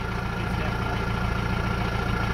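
Mahindra Roxor's four-cylinder turbo-diesel idling steadily through a three-inch straight-pipe exhaust.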